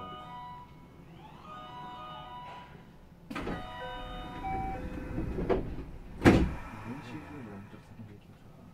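Sound inside a JR West 225 series electric train: a melody of steady chime-like tones with a voice over it, then a sudden rush of noise about three seconds in and a single loud thump just after six seconds.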